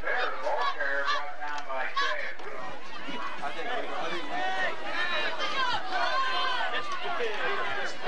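Football crowd in the stands, many voices talking and shouting at once in a steady babble, with no single speaker standing out.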